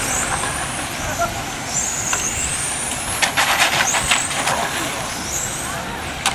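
Radio-controlled on-road race cars running on the track, their motors whining high and gliding up and down in pitch as they speed up and slow through the corners. A quick run of sharp clicks comes about three to four seconds in.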